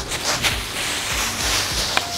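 Dry fallen leaves rustling as a plastic leaf rake sweeps through a pile of them and feet tread through the leaves. It is a noisy swish that grows louder about a second in.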